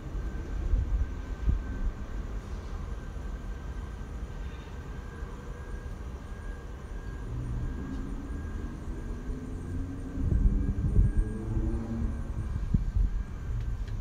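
Low, uneven outdoor rumble with a faint steady high whine. A distant engine-like hum builds in the second half and is loudest about ten to twelve seconds in.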